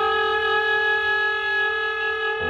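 Free-improvised music from a trio of voice, clarinet and electric guitar: one long, steady held note that does not change pitch, over a low hum.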